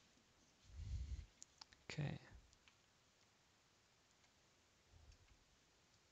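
A few faint clicks from working a computer, with a dull low thump about a second in; otherwise near silence.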